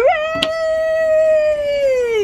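A long, howl-like vocal call held on one steady pitch for over two seconds, then sliding down in pitch, with a brief knock about half a second in.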